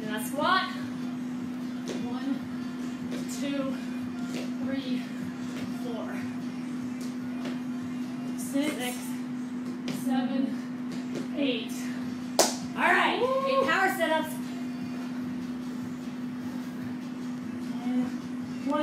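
Scattered thuds and slaps of bodyweight exercise on a rubber gym floor, over a steady low hum. Brief untranscribed voice sounds come through, the loudest about thirteen seconds in.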